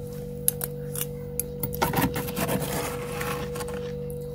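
A metal spoon scrapes thick frost off the walls of a freezer: a few short scratchy clicks, then a longer, denser crunchy scrape through the middle, over a steady hum.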